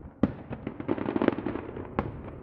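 Fireworks going off in a display: one sharp bang about a quarter second in, then a dense run of rapid small pops and crackles that is loudest just after the middle and thins toward the end.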